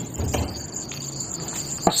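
Crickets chirping in a steady night-time insect chorus, with a single sharp click near the end.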